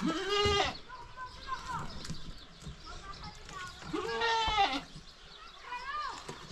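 A goat bleating twice: one call right at the start and another about four seconds in, each lasting under a second.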